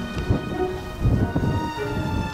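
Wind buffeting the microphone in irregular low gusts, under background music of steady held tones.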